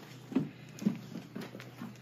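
Soft knocks and shuffling from children moving about on a floor, like light footsteps, with two louder thumps within the first second.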